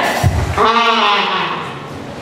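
A person's voice calling out one drawn-out, wavering syllable, loud in the hall's sound system.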